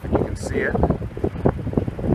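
A person talking, with wind rumbling on the microphone underneath.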